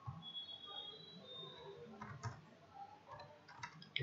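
Faint scattered clicks of a computer mouse and keyboard as a file is saved and its name typed.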